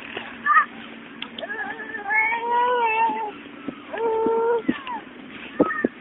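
A toddler's voice: two long held wordless calls, about a second each, with short squeaks before and after.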